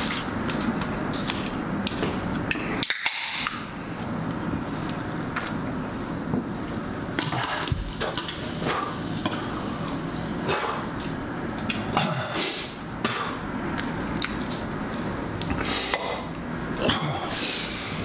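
A person eating a persimmon and handling a drink: irregular clicks, knocks and mouth noises over a steady low hum.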